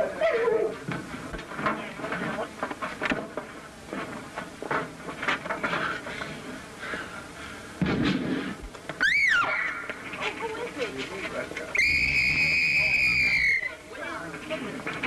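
Film soundtrack of a commotion: indistinct raised voices, a thump about eight seconds in, and a brief high sliding cry. Near the end a whistle is blown in one steady blast of about two seconds, in keeping with a police whistle raising the alarm.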